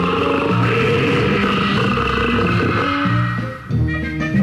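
Instrumental break in a children's animal ABC song: band accompaniment with no singing.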